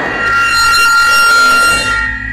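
Horror film score: a tense, held electronic drone of several steady high ringing tones.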